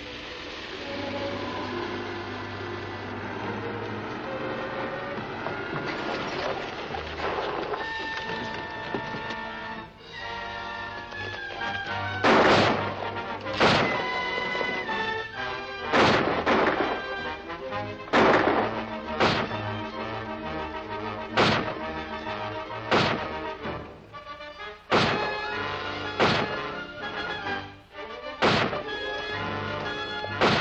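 Dramatic orchestral score for a 1940s film serial. From about twelve seconds in it is punctuated by a run of sharp, loud cracks, one every second or so.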